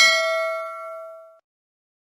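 Notification-bell sound effect: a single bright bell ding that rings out and fades away within about a second and a half.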